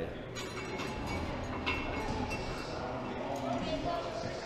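Steady background ambience of an indoor climbing gym: indistinct voices and general room noise, with a few faint clicks.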